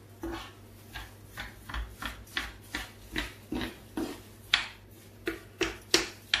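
A spoon stirring and scraping raw round rice through hot oil in a frying pan, sautéing it: short scraping strokes, a little over two a second.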